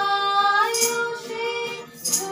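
Two women singing a long held note together with acoustic guitar accompaniment. A hand shaker sounds once, a little under a second in, keeping a slow beat.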